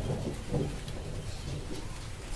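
Quiet eating sounds: fingers mixing rice on metal plates and soft chewing, over a low rumbling background noise.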